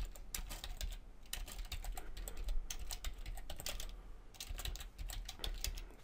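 Computer keyboard typing: a quick, irregular run of keystrokes with short pauses about a second in and again near four seconds.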